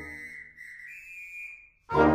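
A high, clear whistle held for about a second and a half over a fading brass chord, stepping up in pitch partway through. The full brass band comes back in loudly near the end.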